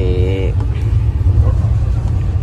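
Steady low rumble of a passenger train coach running along the track, heard from inside the carriage.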